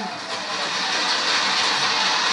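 Large crowd applauding, swelling a little over the first second and then holding steady.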